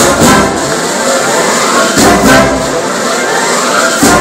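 Brass marching band with sousaphones playing a march, heard up close; the deep bass drops out for most of these seconds except for a strong low passage about halfway through.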